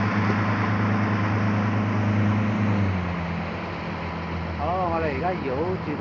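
Boat outboard motor running under way, with the rush of water and air. About three seconds in the engine note drops and quietens as the throttle is eased and the boat slows down.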